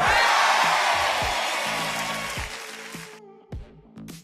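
Background music with a steady beat, under a loud rushing noise that sets in at once, slides down in pitch as it fades, and cuts off sharply about three seconds in.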